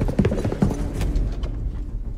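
Action-film soundtrack: a quick run of knocks and impacts over a low, rumbling music score.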